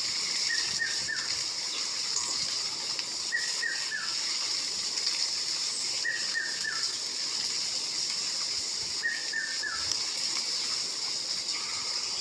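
A forest bird calling: a phrase of three short falling whistles, repeated four times about every three seconds, over a steady high hiss.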